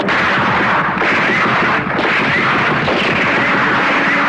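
Heavy, continuous gunfire and artillery blasts from a film battle soundtrack, merging into one dense, unbroken wash of noise with no gaps between the shots.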